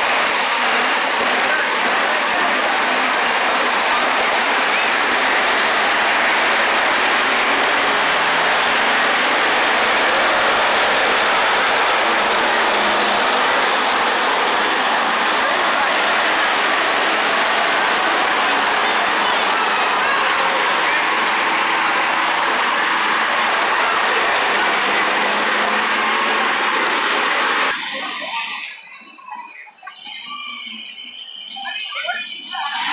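Monster truck engines running loud and steady, until the sound cuts off suddenly near the end.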